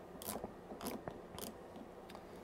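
Channel knob on an AnyTone AT-D878UV handheld radio being turned step by step: soft detent clicks, roughly two a second, as it tunes down through the FM broadcast band.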